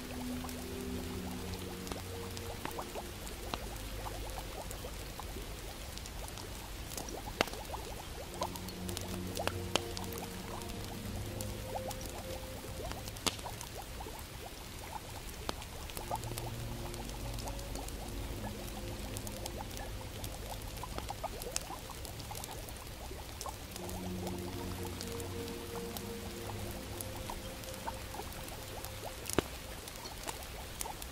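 Soft background music in slow, sustained low notes that come in phrases with pauses between them, over a fire crackling with frequent sharp pops and a steady low rumble.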